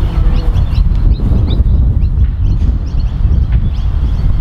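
Wind buffeting the microphone in a loud, steady rumble, with birds chirping in the background.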